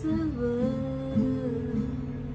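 A woman's voice holds one long, slightly bending note over a steel-string acoustic guitar. The voice stops about three-quarters of the way through while the guitar plays on.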